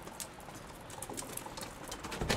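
Outdoor ambience: a faint steady hiss with irregular light ticks and taps, several each second.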